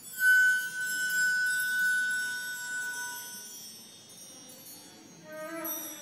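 Contemporary chamber music for flute, saxophone and percussion. A sudden metallic percussion stroke sets off a chime-like shimmer and a high ringing note that fades over about three seconds. Near the end a few short wind-instrument notes come in.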